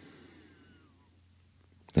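Quiet room tone in a pause between spoken phrases: faint hiss with a steady low hum.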